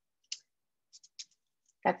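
A few short, faint clicks: one about a third of a second in and a small cluster around a second in. A woman starts speaking just before the end.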